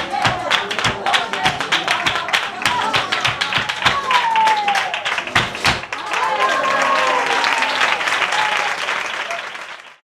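Flamenco palmas: fast, even hand-clapping with voices calling out over it. About six seconds in it thickens into applause and cheering, which fades out at the end.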